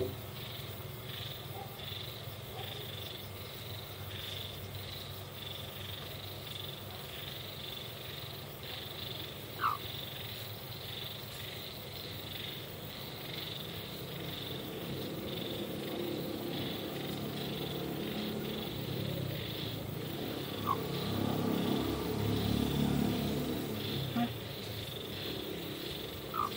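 Hen making a low, soft purring trill, louder in the second half, with a short high peep about ten seconds in and another about twenty-one seconds in.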